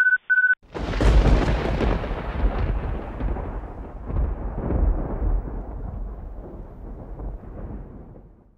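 Two short electronic beeps, then a thunderclap just under a second in that rolls on as a long rumble, swells again about four to five seconds in and slowly fades away.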